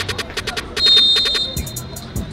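Referee's pea whistle blown in one long blast about a second in, the last of the blasts signalling full time. Background music with a steady beat plays throughout.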